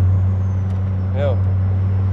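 Audi RS2's 20-valve turbocharged five-cylinder engine heard from inside the cabin, droning at a steady low pitch at low revs while the car is under way.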